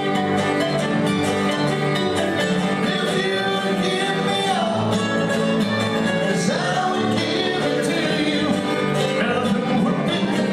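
Live bluegrass band playing: acoustic guitar, mandolins and upright bass, with a man singing over them.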